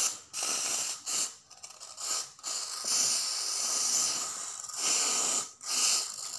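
Aerosol hair-removal foam spray hissing from the can in a series of short spray bursts, with one longer spray of about two seconds near the middle.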